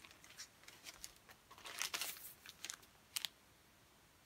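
Faint rustling and crinkling of a vinyl record's album jacket being picked up and handled, with light clicks. The busiest rustle comes around the middle, and a short pair of sharp clicks follows a little after three seconds.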